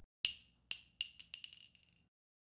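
Small glass shards tinkling as they fall and settle after a shatter, heard as a series of bright ringing clicks. The clicks come faster and fainter, then stop.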